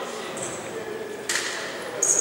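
Indistinct voices echoing in a large indoor sports hall. A short high squeak comes about half a second in, and a sudden louder, sharper sound follows a little past the middle.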